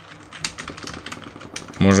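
Typing on a computer keyboard: a quick, irregular run of key clicks, with a man's voice starting near the end.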